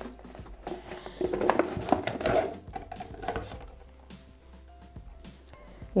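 Chopped pear pieces tipped from a bowl into the stainless-steel jar of a Bimby (Thermomix) food processor: a cluster of soft knocks and clatter over the first few seconds. Quiet background music plays underneath.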